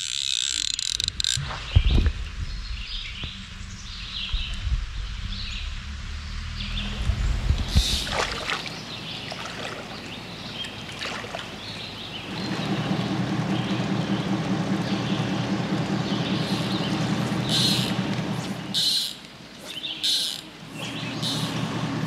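Outdoor ambience at a slow stream in light rain: running water with bird calls. A low rumble fills the first eight seconds, and a fuller steady noise sets in at about twelve seconds and stops at about nineteen.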